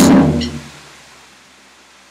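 Final hit of a drum cover on a Yamaha DTX electronic drum kit: one loud crash-and-bass stroke that dies away over about a second, leaving a steady hiss.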